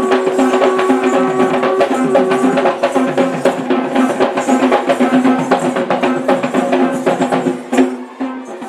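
Kandyan drums (geta bera) beaten in a fast, dense rhythm, with a steady held note sounding under the drumming.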